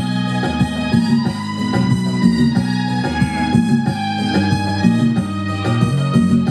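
Instrumental passage of a song played on an electronic keyboard in an organ-like voice, held chords over a moving bass line, with no singing.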